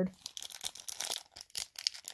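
Plastic foil trading-card pack crinkling in a quick run of sharp crackles as it is handled and torn open.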